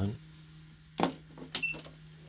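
A sharp click about a second in, then a few lighter clicks with a short high beep among them, over a low steady hum.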